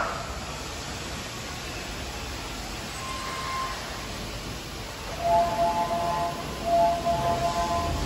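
Electronic door chime at a station platform: a steady background hum, then a repeating chime of a few high tones from about five seconds in, as the doors open on a train standing at the platform.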